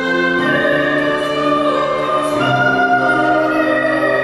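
Music: a slow sacred song sung to piano accompaniment, with long held notes that change every second or two.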